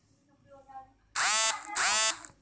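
Android phone's WhatsApp notification tone: two short, loud electronic tones in quick succession, starting about a second in, signalling incoming WhatsApp messages.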